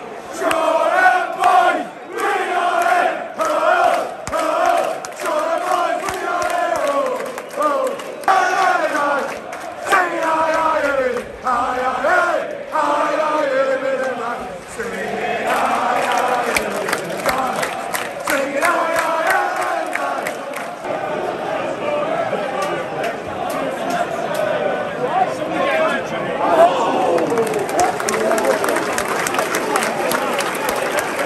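Football crowd chanting in unison, with sharp claps keeping time about once a second through the first half. The chant then spreads into a denser, more even mass of singing and shouting.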